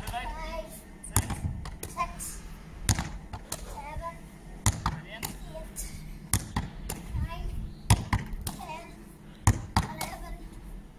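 A Gaelic football thrown hard against a concrete wall and caught over and over. Sharp smacks of the ball on the wall and thuds as it is scooped into the hands and chest come roughly every second.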